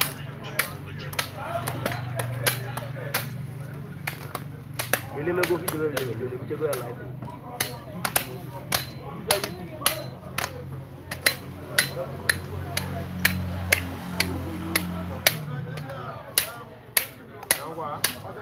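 Machetes chopping a cow carcass laid on a wooden plank, sharp knocks coming about twice a second, with the odd gap.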